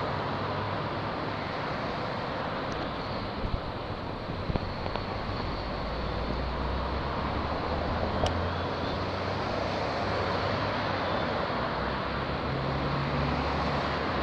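Road traffic: cars passing close by over a steady low engine hum, with a few sharp knocks about three and a half to four and a half seconds in and again about eight seconds in.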